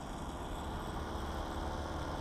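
Paramotor trike engine running steadily, heard faint, with a steady hiss of air.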